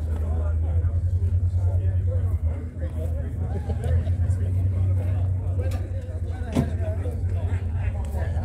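A car engine idles with a low, steady rumble under the chatter of people nearby. There is one sharp click about two-thirds of the way through.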